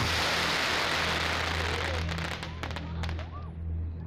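Castillo fireworks towers crackling densely as they shower sparks. The crackle thins out after about two seconds, leaving a few scattered sharp pops.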